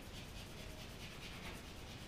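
A drawing stick scrubbing on paper in quick, repeated short strokes, faint, as light tone is shaded onto a drawn box.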